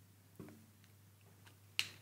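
Quiet room with a faint short sound about half a second in and a single sharp click near the end.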